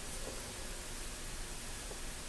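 Steady, even hiss of room tone and recording noise, with no distinct sound standing out.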